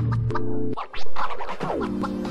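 Background music: an electronic track whose held tones slide down in pitch, with a brief break just before a second in and then a loud new phrase.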